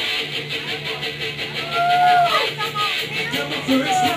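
Live rock band playing loud through a PA: electric guitar with bending notes over a steady, repeating bass line.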